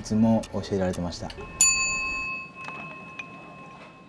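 A man's voice during the first second, then a single struck chime-like tone about a second and a half in that rings on with several steady overtones and slowly fades away.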